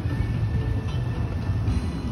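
Steady low rumbling noise on a phone microphone carried outdoors, with faint music in the background.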